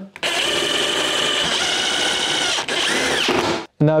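Power drill-driver running steadily for about three and a half seconds as it drives the assembly screws fixing the carpeted rods to the particleboard base, then cutting off abruptly.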